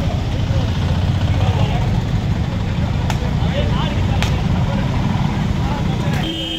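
Coconuts being smashed on a street: two sharp cracks about three and four seconds in. Under them run a steady low rumble of street noise and faint voices.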